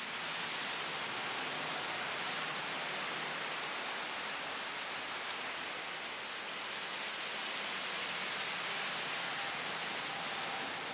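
Steady, even rushing hiss of churning water, with no engine note to be heard.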